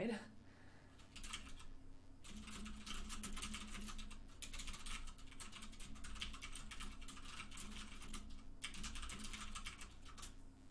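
Typing on a computer keyboard: quick runs of keystrokes with short pauses about two, four and eight and a half seconds in.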